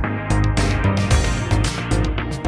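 Background music with a steady beat: electronic instrumental track with sustained bass and percussion.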